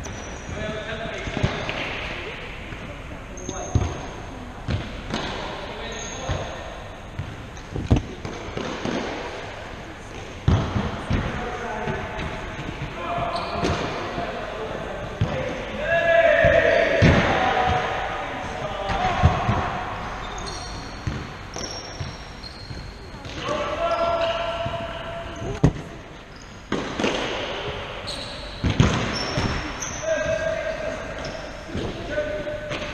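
Indoor five-a-side football on a wooden sports-hall floor: the ball is kicked and bounces in a string of sharp thuds, and players shout now and then, all echoing in the large hall.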